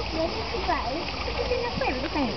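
Several people's voices chattering in the background, overlapping, over a steady wash of water noise.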